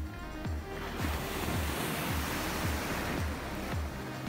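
Background music with a steady beat of about two thuds a second, and the wash of breaking surf over it from about a second in until near the end.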